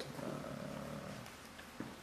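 A house cat purring, fading out after about a second and a half.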